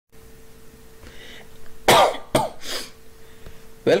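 A man coughing, two or three short coughs in quick succession about two seconds in, over a faint steady hum.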